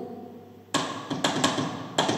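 Brass straight telegraph key clicking as Morse is keyed by hand, a quick run of clicks starting under a second in, with no tone: the opening letters of a radio call.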